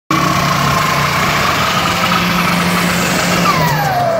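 Turbocharged drag hatchback's engine running loud and steady at high revs, with a high whine over the exhaust note. Near the end the whine falls sharply in pitch as the car pulls past.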